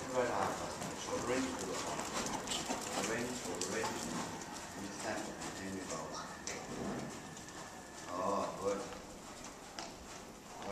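A horse's hoofbeats on sand arena footing as it is ridden, with a voice talking over them.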